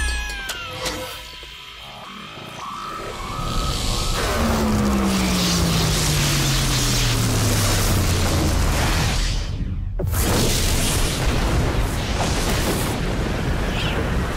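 Cartoon soundtrack of dramatic music and sci-fi sound effects: a deep tone slides slowly downward for several seconds as the failing force field powers down. About ten seconds in the sound cuts out for an instant, then a loud, dense rushing noise takes over.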